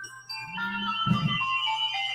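Phone ringtone playing a simple electronic melody of single high notes that step up and down a few times a second.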